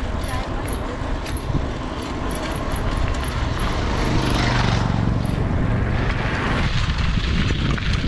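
Wind rushing over the camera microphone and tyre rumble from a mountain bike rolling downhill on a paved road, getting louder from about three seconds in as speed builds. A motorbike's engine hum passes about halfway through.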